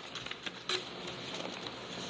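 A small child's hands handling and turning a page of a picture book: light paper taps and a brief page rustle about two-thirds of a second in.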